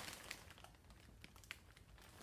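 Faint crinkling of a plastic shopping bag being handled: a few soft, scattered crackles, one slightly sharper about one and a half seconds in, against near silence.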